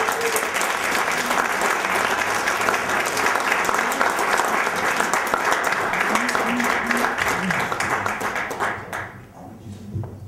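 Audience applauding, a steady dense clapping that dies away near the end.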